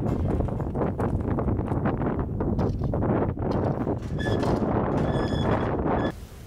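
A wheelbarrow rattling and clattering as it is pushed over gravel, with a steady low rumble under irregular knocks. A short high squeak comes about four seconds in, and again from about five seconds.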